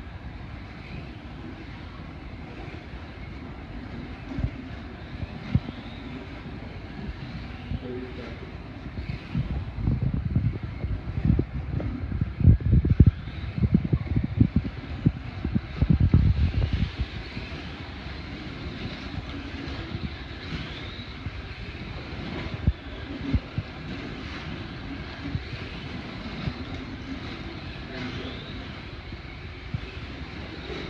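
Slot cars racing on a multi-lane track: a steady whirring and whining from their small electric motors and pickups on the rails, with faint rising and falling whines as cars pass. A stretch of low thumps and rumbling from about ten to seventeen seconds in is the loudest part.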